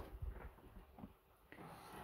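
Near silence with a few faint low bumps and soft clicks near the start: handling noise as the camera is moved.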